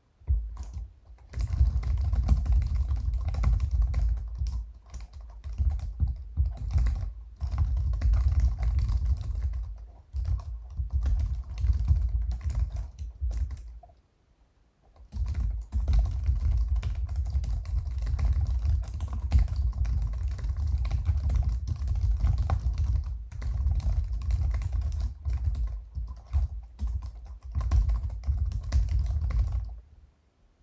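Typing on a computer keyboard through a participant's open call microphone: dense, irregular rapid keystrokes, heavy and thudding in the low end, with a pause of about a second midway.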